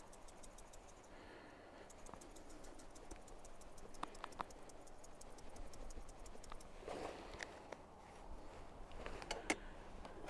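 Faint, rapid, even ticking for a couple of seconds as pepper is added to the cooking pot, followed by a few scattered light clicks and knocks.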